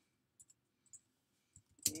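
A few faint computer keyboard keystrokes, soft clicks spaced out over the first second or so.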